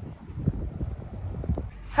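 Wind buffeting the microphone: an uneven low rumble with a few soft knocks.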